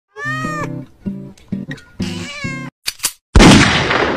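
A domestic cat meowing several times in short, bending calls over music, then a loud, sudden crash a little over three seconds in that fades away over a second or so.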